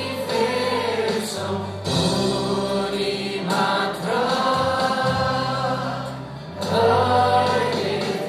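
Worship band performing a Nepali Christian worship song: several voices singing together at microphones over acoustic guitar. The singing eases briefly about six seconds in, then comes back louder.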